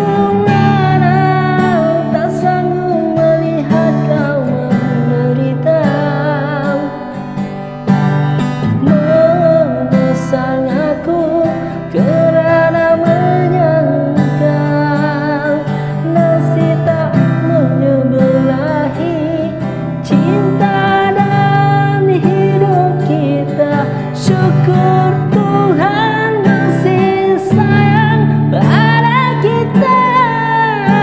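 A man singing a Malay ballad with vibrato, accompanying himself on a strummed acoustic guitar.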